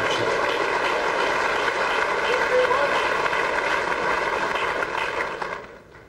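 Tournament audience applauding in the snooker arena, a dense steady clatter that dies away about five and a half seconds in.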